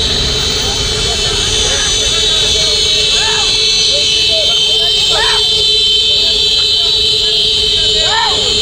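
A convoy of motorbikes hooting their horns together in one steady buzzing drone. Voices shout over it now and then, loudest about three and five seconds in.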